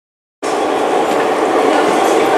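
Dead silence for a moment, then the steady, echoing din of an underground tram station concourse.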